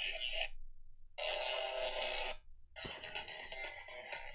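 Electronic dance music from a club DJ set, played back quietly and cutting out twice for about half a second each.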